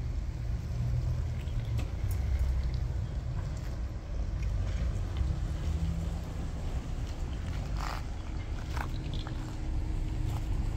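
Steady low rumble of Ford Bronco SUV engines running at low speed, with a faint steady hum near the end.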